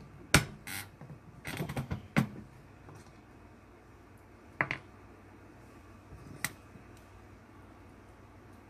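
Sharp metallic clicks and short scrapes of small steel parts being handled at a reloading press: a loud click about a third of a second in, a quick run of clicks around two seconds, then two single clicks near five and six and a half seconds.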